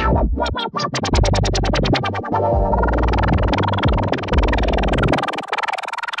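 Electronic dance loops from Logic Pro's Live Loops grid played through the Remix FX multi-effects plug-in with live effects. In the first two seconds the wobble effect chops the music into rapid pulses that speed up. About five seconds in, the bass drops away as the filter pad cuts the low end.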